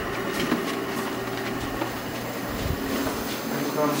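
Steady mains hum and machine noise of laboratory equipment, with a few light knocks and one low thump a little before three seconds in.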